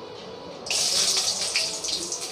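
Garlic cloves dropped into hot oil in an aluminium kadai, sizzling: the hiss starts suddenly under a second in, with fine crackles, then eases off.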